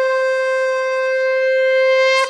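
Conch shell (shankha) blown in one long, steady, loud note with a bright, buzzy stack of overtones, sounded as the ritual call that opens Hindu devotional worship.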